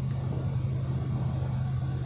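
Steady low hum of a running vehicle, heard inside its cabin.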